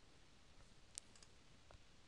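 Near silence with a few faint computer mouse clicks about a second in, a short cluster and then one more, as a file is selected in a dialog box.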